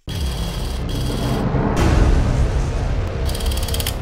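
Intro sting of music and sound effects: a low rumble that swells to a peak about halfway, with a fast mechanical ratcheting buzz at the start and again near the end. It starts and cuts off abruptly.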